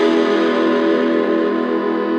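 Electric guitars played through small amps with distortion, a chord held and ringing with a slight waver in pitch.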